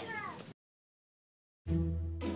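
A woman's speech trails off, then a second of dead digital silence at an edit, then instrumental background music with a steady bass note comes in about one and a half seconds in.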